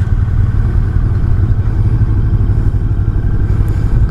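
Macbor Montana XR5's parallel-twin engine running at low revs as the motorcycle rolls slowly, a steady low rumble.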